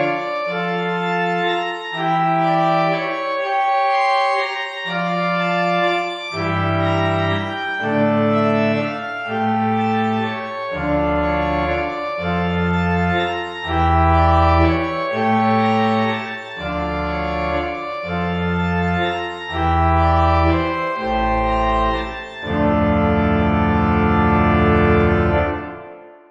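Spitfire Audio Union Chapel Organ, a sampled pipe organ, playing a slow sequence of held chords that change about once a second. Deep pedal bass notes join about six seconds in, and it ends on a long held chord that dies away near the end.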